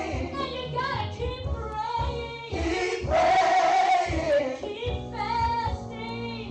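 Women singing a gospel song through microphones: a female lead voice with backing singers, the pitch wavering with vibrato, and one long held note from about three seconds in.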